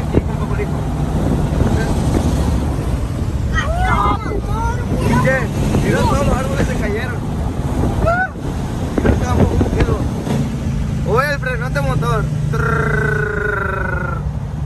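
Semi-truck diesel engine running steadily at cruise, heard from inside the cab, with people yelling "eh" again and again out of the window. A short steady horn-like tone sounds near the end.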